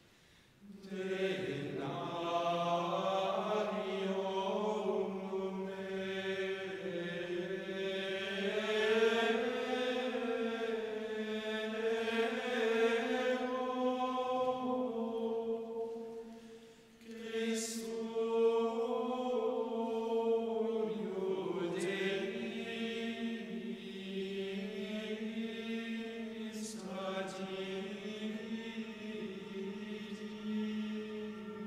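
Men's choir singing Gregorian chant in unison, a slow Latin melody that begins about a second in and pauses briefly for breath around the middle, carried by the reverberation of a large church.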